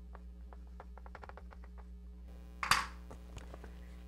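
Chalk tapping and scratching on a blackboard while writing: a run of faint, quick ticks over a steady low hum. The ticks stop a little past halfway, and a short, louder rush of noise follows soon after.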